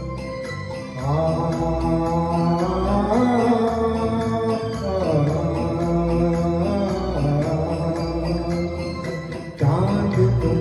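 A man singing a Hindi song into a microphone over a karaoke backing track, in long held notes with a slow downward glide about halfway through. A new, louder phrase comes in near the end.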